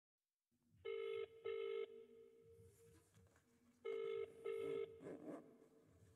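Telephone ringing tone heard down the line, the British double ring: two short rings about a second in, a pause, then two more about four seconds in, a call waiting to be answered.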